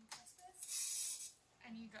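Graco Verb stroller folding up after its fold button is pressed: a faint click, then a short, loud rustling swish as the frame and fabric canopy collapse.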